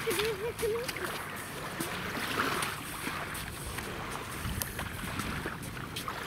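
Wind on the microphone over small waves lapping at a sandy river shore, a steady rushing noise. A short wavering voice sound is heard in the first second.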